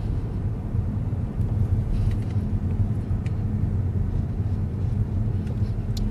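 Steady low rumble of a car's engine and tyres, heard from inside the cabin while the car drives.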